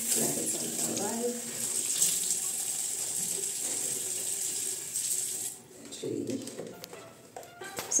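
Water running from a tap into a bathroom sink, a steady hiss that cuts off about five and a half seconds in.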